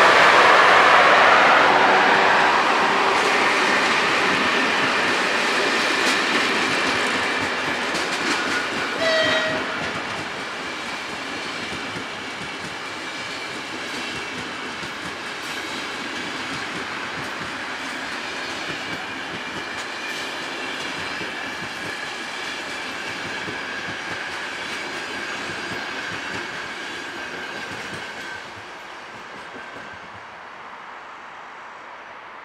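A long train of passenger coaches rolling past with wheels clattering on the rails, loudest at the start and fading steadily as it pulls away. A brief horn note sounds about nine seconds in, and the sound drops abruptly shortly before the end.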